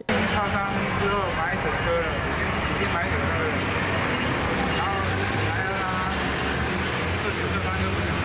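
Steady street traffic noise, with a person's voice faintly heard over it.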